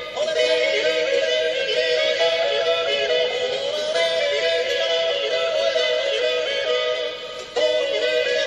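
A male voice yodelling a wordless refrain over Alpine folk band accompaniment, the melody stepping between held notes. The sound drops away briefly near the end, then a new phrase comes in suddenly.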